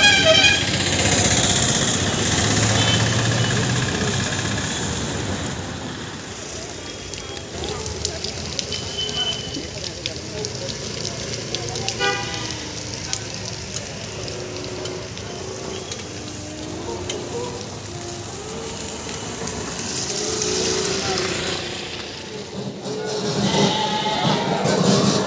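Road traffic on a highway: vehicles passing with a steady rush of engine and tyre noise, cut by short vehicle horn toots, one near the start and one about halfway through. Voices talk in the background.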